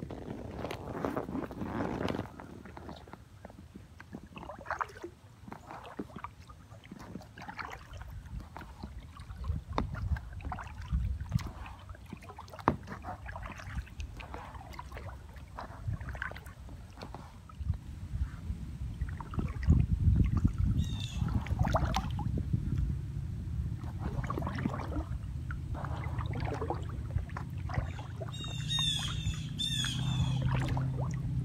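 Aluminium kayak paddle dipping and splashing in calm lake water beside an Intex Challenger K1 inflatable kayak, a stroke every second or two. Birds call several times near the end.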